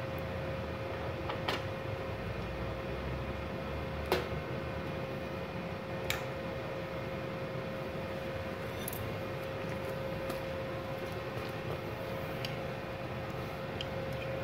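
Inverter welder's cooling fan running with a steady hum, and three sharp metallic clicks in the first half as the stick-electrode holder is handled.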